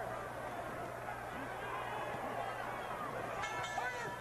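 Arena crowd noise with indistinct voices. About three and a half seconds in, the ring bell rings with a steady, held tone, marking the end of the round.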